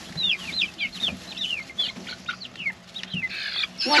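Several young chickens peeping: a stream of short, high chirps that fall in pitch, several a second.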